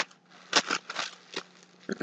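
A few short crinkles of a clear plastic bag being handled, separated by quiet gaps.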